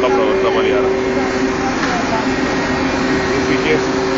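Ship's engine-room machinery running: a loud, steady noise with two constant hum tones that do not change. Faint voices sound under the din.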